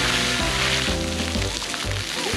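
Background music with a low bass line, over the steady hiss of splash-pad fountain jets spraying water.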